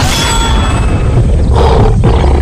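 Tiger roar sound effect dropped into an electronic dance mix, with the mix's heavy bass carrying on underneath.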